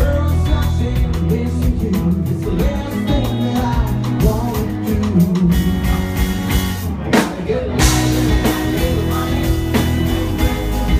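Live band playing a rock song: male lead vocal over strummed acoustic guitar, electric bass and drums.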